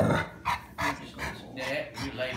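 A dog giving a few short barks.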